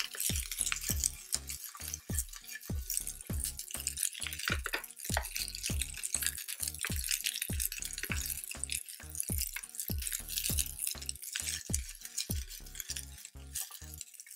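Background music with a steady beat, over string beans sizzling in hot olive oil in a nonstick frying pan as they are stirred and tossed with silicone-tipped tongs.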